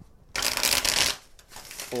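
A tarot deck being shuffled by hand: a burst of rapid card-on-card flicking lasting under a second, starting a moment in and then fading out.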